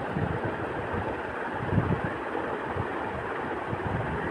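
Steady rushing background noise with irregular low rumbles, the strongest about two seconds in. No distinct cooking sound stands out.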